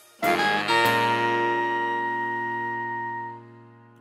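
A short guitar musical interlude: a few quick plucked notes, then a chord left ringing and slowly fading out.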